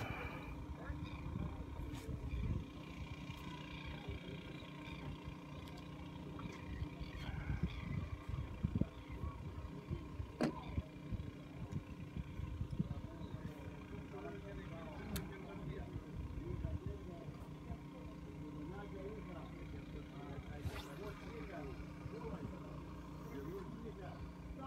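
Faint background talking over a steady low rumble, with a couple of sharp clicks.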